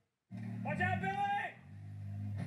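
An off-road buggy's engine running under load, with a voice calling out over it for about a second; the engine note rises near the end.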